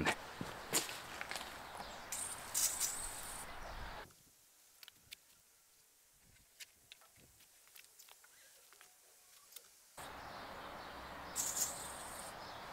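Short hissing bursts from an aerosol can of PB Blaster penetrating oil being sprayed onto rusted suspension parts, once a couple of seconds in and again near the end, with a few light clicks and taps between. A stretch in the middle drops to near silence.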